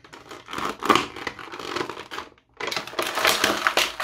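Clear plastic packaging crinkling and crackling as an action figure is pried out of its tray. The crackling stops briefly a little past halfway, then resumes more busily.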